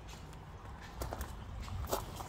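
A few footsteps on gravel in the second half, over a low steady background rumble.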